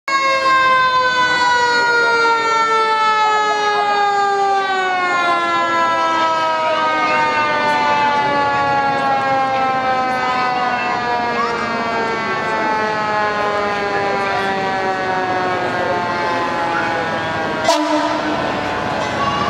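A fire engine's mechanical siren winding down: one long tone with many overtones, falling slowly and evenly in pitch. A sharp knock sounds near the end.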